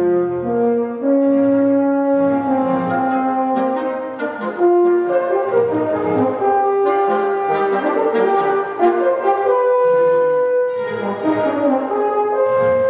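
A chamber orchestra playing, with bowed violin, cello and double bass among the instruments: held notes that step from pitch to pitch, several lines at once.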